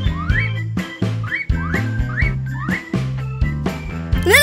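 Cartoon background music with a steady beat, over which a short rising whistle-like sound effect plays four times.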